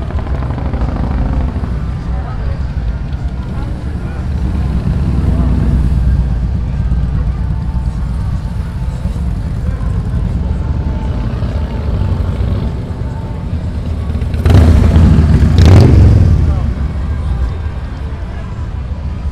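Motorcycle engines rumbling along a busy street, with one bike passing close and loud for about two seconds near the end.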